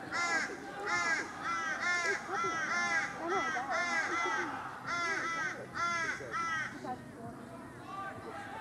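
A crow cawing in a long run of harsh calls, about two a second, which stops about seven seconds in.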